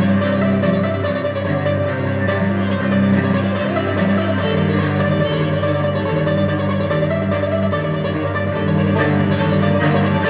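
A string band of banjo, violins and cello playing together: steady banjo picking over bowed violin lines and sustained cello notes.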